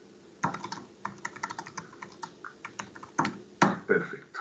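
Typing on a computer keyboard: a run of quick, uneven keystrokes, with two louder key strikes near the end.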